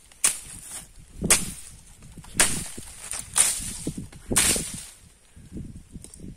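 Five sharp swishing strokes through grass and dry brush, about one a second, with a soft thud in each and light rustling between them.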